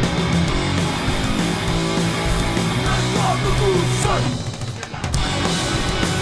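Live punk band playing at full volume: distorted electric guitars, bass and drums. The band cuts out briefly about four seconds in, then crashes back in about a second later.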